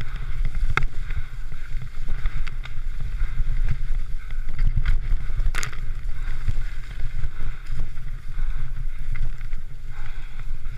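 Wind buffeting the microphone of an action camera on a Yeti SB66 mountain bike as it descends a muddy forest trail, with a steady rumble and rattle from the bike rolling over rough ground. Sharp knocks from the bike about a second in and again around the middle.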